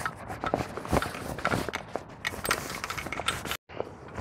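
Canvas carrying bag with a metal tripod inside being handled: fabric rustling and scraping with scattered clicks and knocks. The sound drops out for a moment near the end.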